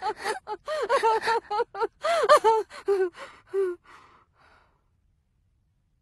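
A high-pitched voice in a rapid run of short, breathy vocal bursts, each rising and falling in pitch, growing sparser and fading out about four seconds in.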